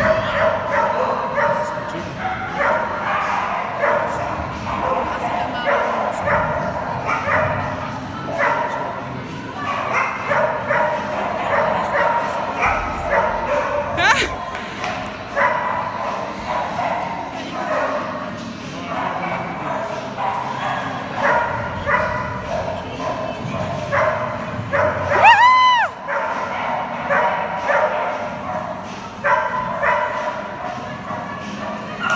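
A dog yipping and barking in quick, short calls that go on almost without a break, with one longer call that rises and falls about three-quarters of the way through.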